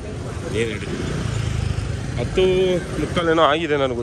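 Town street traffic: a motor vehicle's engine rumbling past around the middle, with people talking over it near the start and the end.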